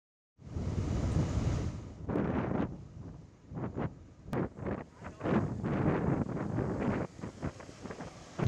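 Wind buffeting the microphone: an uneven rushing noise that swells and drops in gusts.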